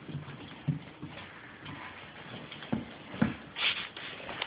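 A dog's claws clicking and tapping on a hardwood floor as it moves around, a handful of sharp taps spaced unevenly.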